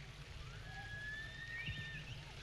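Faint, steady outdoor background noise with a low hum. A thin, high whistle-like tone rises slightly through the second half.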